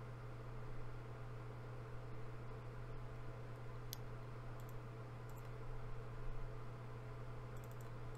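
A few sharp computer mouse clicks, the loudest about halfway through, over a steady low hum.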